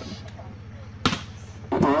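Volleyball struck by hand during a rally: one sharp smack about a second in, followed near the end by voices rising.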